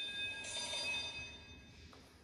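A small bell struck about half a second in, ringing with several high steady tones that fade away within about a second.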